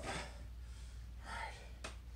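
A man breathing hard after push-ups: two audible breaths, one at the start and one about a second and a half in, then a single sharp click near the end.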